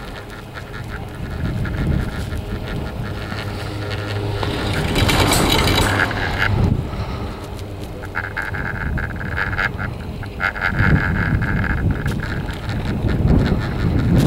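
Detachable chairlift running while being ridden: a low rumble from the haul rope and line, with a short rush of noise about five seconds in and a high squealing tone, broken by brief gaps, from about eight seconds in until near the end.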